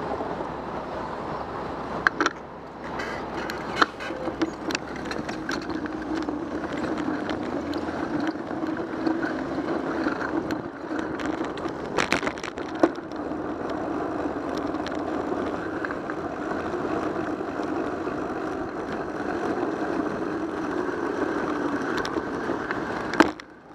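Bicycle riding over city pavement, heard from a bike-mounted camera: steady wind and tyre noise, with a few sharp knocks as the bike hits bumps, the strongest about two seconds in and near the middle.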